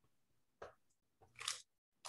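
Two faint, brief scraping sounds, about half a second and a second and a half in, from a wax-painted panel being shifted and handled on a worktable; otherwise near silence.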